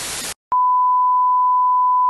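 Television static hiss that cuts off about a third of a second in, followed by a loud, steady, single-pitch test-pattern beep, the tone that goes with colour bars, starting about half a second in.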